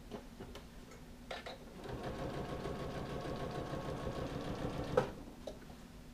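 Janome electric sewing machine stitching a seam in a jacket sleeve for about three seconds, starting about two seconds in, then stopping with a sharp click.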